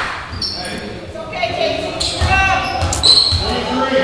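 A basketball bouncing on a gym's hardwood floor, with voices calling out and the big hall's echo. A couple of short high squeaks can be heard over it.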